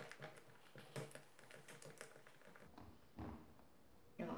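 Faint, irregular taps and scrapes of a spatula stirring a thick, soft-brigadeiro-like filling in a pot, with a slightly louder scrape a little past three seconds in.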